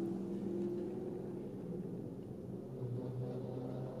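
Car engine running, heard from inside the cabin as a steady low hum with a few held tones.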